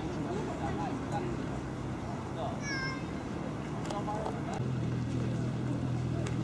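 Outdoor ambience: a steady low hum with faint, indistinct voices, and one short, high call with several overtones about halfway through.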